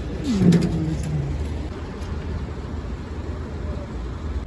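A single low cooing call, falling in pitch, about half a second in, over a steady low traffic rumble.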